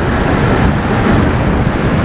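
Suzuki SV650 motorcycle ridden at speed: a steady rush of wind on the helmet microphone over the engine and road noise.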